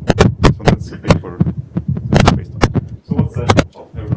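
A man speaking in a lecture, close to the microphone: speech only.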